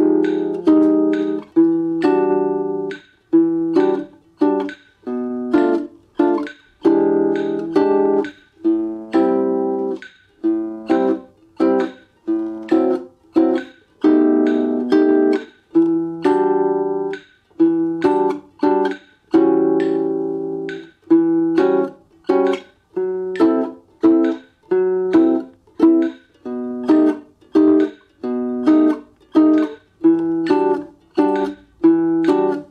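Nylon-string guitar playing the chord section slowly, half tempo, moving through shapes such as Em9 and B7 alt. It is mostly short, rhythmic plucked chord stabs, with a few chords left to ring for a second or so.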